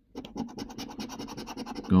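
A coin scratching the silver coating off a paper scratch card in rapid, short, even strokes.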